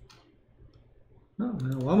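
A single computer mouse click right at the start over a faint low hum, then a man begins speaking about one and a half seconds in.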